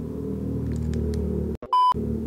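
Low, steady rumble of a loud car going by. Near the end the sound cuts out abruptly and a short, loud, single-pitched electronic bleep follows.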